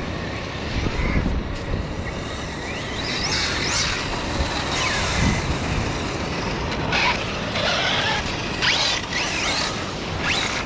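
Brushless electric motors of 6S RC monster trucks whining, rising and falling in pitch several times as the trucks accelerate and slow on wet sand, over a steady rush of noise.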